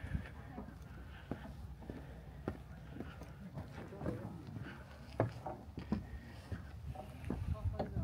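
Footsteps of a person walking, sharp irregular steps about one a second, with indistinct voices in the background.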